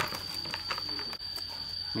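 Faint scattered clicks and knocks from a plastic jar of filter media being handled and its metal screw lid being fitted, over a steady high-pitched whine.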